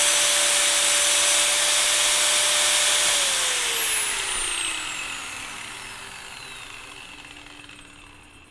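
Small handheld angle grinder running free at full speed with a steady high whine, then switched off about three seconds in and winding down, its pitch and level falling away. Its 112 mm blade sits too close to a homemade dust shroud made for a 110 mm blade and rubs against the shroud's edge.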